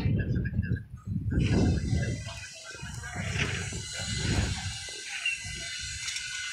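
Construction-site ambience: an uneven low rumble that swells and drops, with scattered voices of workers.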